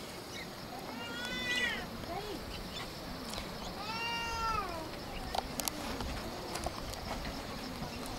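Two drawn-out animal cries, each rising and then falling in pitch over about a second, the first about a second in and the second about four seconds in, with a few faint clicks around them.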